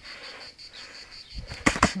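Boxing gloves landing two quick, sharp smacks near the end, over an insect's steady, rapidly pulsing chirp.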